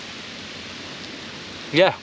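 Steady hiss of gentle surf washing on a sandy beach, with a man saying "Yeah" near the end.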